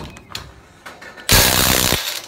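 Makita DTW285Z 18 V cordless impact wrench driving a scaffold-fitting nut: a few light clicks as the socket is set on the nut, then the wrench runs loudly for just under a second and stops abruptly.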